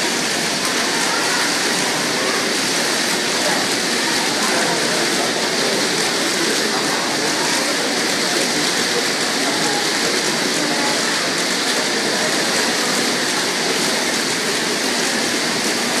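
Metropolis II kinetic sculpture running: hundreds of small custom toy cars roll along its curving multi-lane tracks, making a steady, dense rushing hiss like heavy rain.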